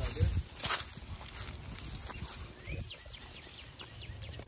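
Footsteps and rustling through tall dry grass, with a sharp knock and handling noise in the first second. A few faint, high chirps come near the end.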